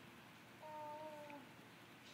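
A single faint, held vocal sound, level in pitch and under a second long, about halfway through: a person's voice.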